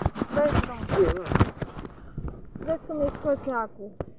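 People talking in Romanian over a few sharp knocks in the first second and a half.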